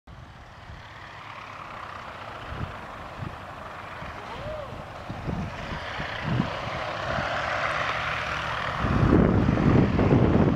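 Radial engine of a Stearman biplane running at taxi power, growing steadily louder as the plane comes closer, with a heavier low rumble from about nine seconds in.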